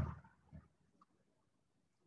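Near silence: a man's voice trails off at the start, then there is only room tone with a faint brief sound about half a second in.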